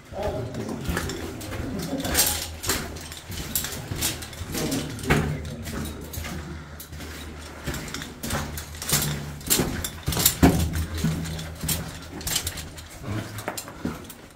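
Footsteps crunching and scuffing on the rocky floor of a mine tunnel, with irregular clicks and knocks from gear over a steady low hum.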